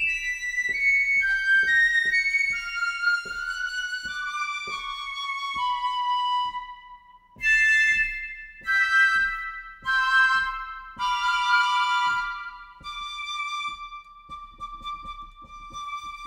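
Spitfire Symphonic Woodwinds piccolo flute sample library played from a MIDI keyboard. It plays a stepwise descending line of held high notes, then a few phrases with overlapping notes, and ends on one long sustained note.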